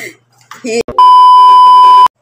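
A loud, steady, single-pitched beep tone added in editing. It starts about halfway in, lasts about a second, and cuts off suddenly at the cut to a title card.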